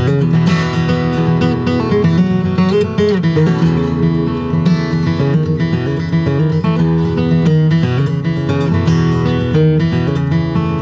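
Solo steel-string acoustic guitar picking a fiddle tune, a steady run of single notes over a bass line.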